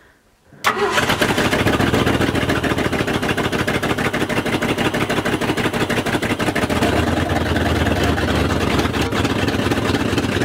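Jeep Willys pickup mud truck's engine firing up abruptly about a second in, then running loud with a rapid, even beat.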